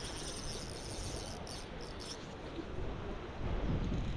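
Shallow river running over rocks: a steady rush of water, with a faint high-pitched chirring over it for about the first two seconds.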